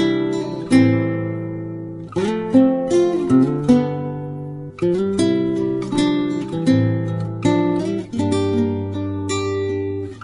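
Background music: acoustic guitar playing plucked and strummed chords, each struck note fading away before the next.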